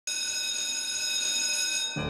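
Electric school bell ringing, one steady unbroken ring that cuts off abruptly.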